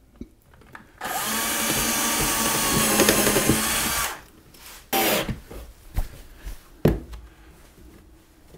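DeWalt cordless drill driving a screw into a wooden bracket block: the motor spins up with a rising whine and runs steadily for about three seconds. A shorter burst and a couple of sharp knocks follow.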